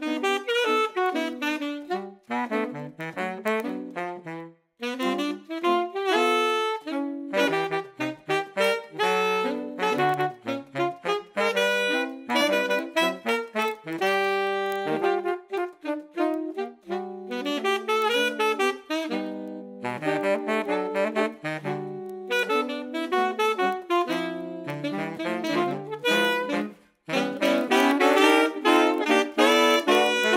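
A saxophone quartet, with a baritone saxophone on the bottom line, playing a jazz piece in short, punchy notes broken by a couple of brief rests, loudest near the end.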